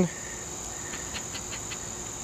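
Crickets trilling as a steady high-pitched drone. A few faint ticks from a plastic scratcher on a scratch-off lottery ticket come around the middle.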